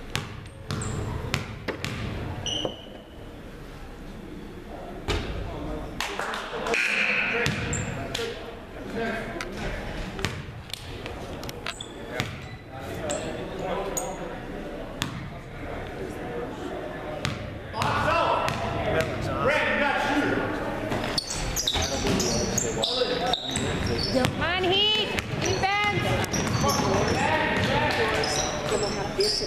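Basketball bouncing on a hardwood gym floor in a series of sharp bounces, under the voices of players and spectators. Near the end, sneakers squeak in short chirps as play resumes.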